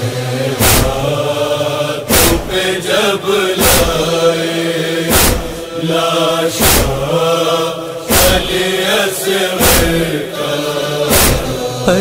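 A chorus of voices chanting the lament's refrain in unison, held and sliding notes, over a sharp, regular beat about every second and a half.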